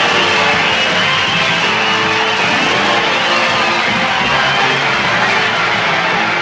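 Stage music playing loudly and steadily over a studio audience's applause and cheering.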